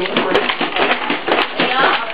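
Indistinct voices in a small room, with a few light clicks from plastic baby toys being handled.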